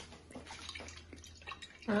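Olive oil being drizzled onto diced vegetables in a glass baking dish: faint, irregular dripping and light ticks.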